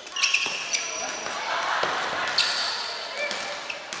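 Futsal players' shoes squeaking on a wooden sports-hall floor many times, short high squeaks, with the thuds of the ball being kicked and players shouting to each other.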